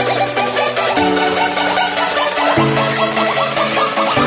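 Chinese electronic dance remix music: held synth chords over a bass line that changes note about every second and a half, with a quick repeating higher synth figure.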